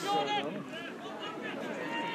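Distant voices of players on the pitch: a brief high shout at the start, then faint talk over open-air background noise.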